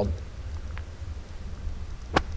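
Low, uneven rumble of wind buffeting the microphone during a pause in speech, with a faint tick about halfway through.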